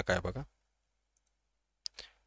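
A man's voice ends a phrase in the first half second, then silence until a single short, sharp click just before the end.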